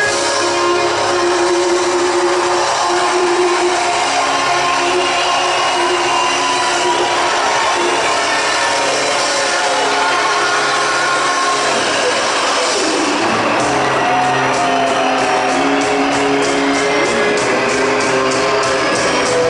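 Live pop-rock band with keyboards, guitars and drums playing in a large hall; a sparser passage of held notes, with a steady strummed rhythm picking up again about three quarters of the way through.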